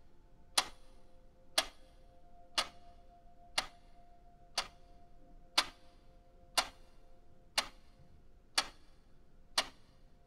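Countdown-timer tick sound effect, one sharp tick every second, with a faint steady tone underneath.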